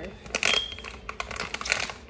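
Stiff plastic inner bag of a cornstarch box crinkling and crackling in an irregular run as hands tug and pull at it to get it open, with a louder rustle about half a second in.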